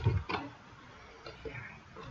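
Computer keyboard keystrokes: a quick run of clicks at the start and two more a second or so later, as code is typed.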